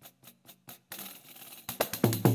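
Percussion music: light jingling strikes, about four a second, fading away until about a second in. After a short break, loud tambourine hits with a deep thump start near the end.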